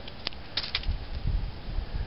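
Hands handling sticks and snare wire in dry leaf litter: one sharp click, then a few lighter clicks, over a low uneven rumble of handling.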